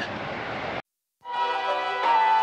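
Steady outdoor noise that cuts off abruptly just under a second in. After a brief dead silence, background music with sustained tones comes in.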